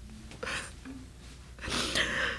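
A person's breathy gasps: a short one about half a second in and a louder one near the end, with no voice in them.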